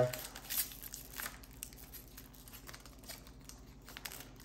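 Wrapper of a 2021 Optic football trading-card pack crinkling and tearing as it is opened by hand, in soft scattered rustles.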